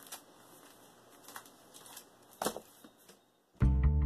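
A few faint rustles of comic books being handled, then music with a steady line of struck notes starts abruptly near the end and is the loudest sound.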